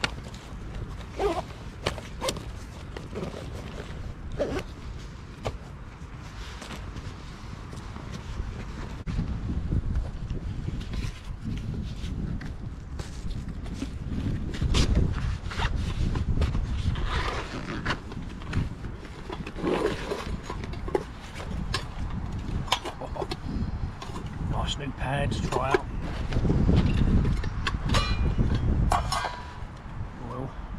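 Metal camping cookware being handled and set down: scattered clinks and knocks of a pot, frying pan and lid, over a low rumble that swells through the middle and latter part.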